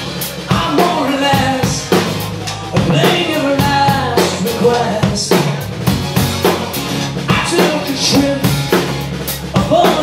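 Live rock band playing a song: a drum kit keeping the beat under electric bass and strummed acoustic guitar, with a melodic line on top.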